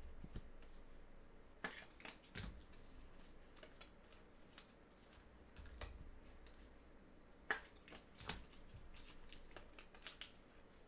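Faint handling noise of trading cards and packs: a scattering of light taps and rustles, the sharpest click about seven and a half seconds in.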